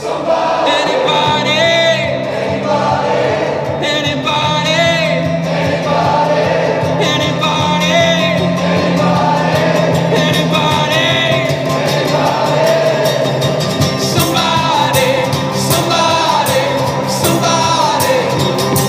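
A live acoustic rock band playing and singing in a large stone church: strummed acoustic guitars, electric guitar and a box-drum beat under group vocals, with the church's reverberation. The percussion hits grow busier near the end as the song builds.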